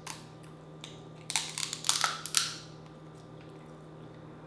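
Cooked shellfish shell being cracked and peeled apart by hand: one sharp click at the start, then a run of crackling snaps for about a second, from a little over a second in.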